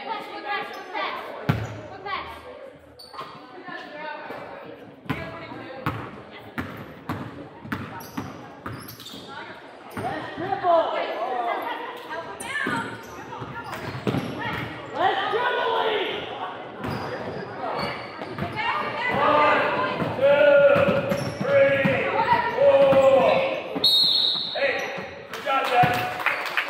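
Basketballs bouncing on a hardwood gym floor during a youth game, with indistinct shouting from players, coaches and spectators echoing in the hall. The voices get louder about halfway through, and there is a short high whistle near the end.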